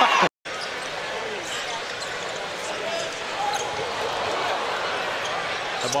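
Basketball arena ambience: a steady crowd murmur with a basketball being dribbled on the hardwood court. It follows a brief cut-off after a commentator's shout right at the start.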